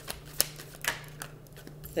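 Tarot cards being handled and set down on a wooden table: a few sharp clicks and taps, the loudest a little under half a second in.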